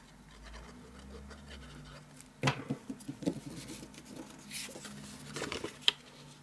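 Cardstock being handled by hand: soft paper rustles and scrapes, a few light taps, and a sharp click just before the end.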